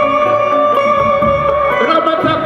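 Live band music with electric guitar, with notes held for about a second and a half over a moving bass line.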